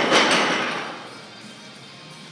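Loaded Olympic barbell with bumper plates settling on a lifting platform after a drop: one last knock and rattle right at the start, fading out over about a second.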